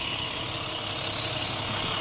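A school bus driving past close by: a loud, steady rush of engine and road noise with a thin, high whine running through it.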